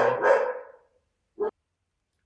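A man's voice trailing off in a loud drawn-out sound during the first second. A brief short sound follows, then dead silence where the recording has been cut.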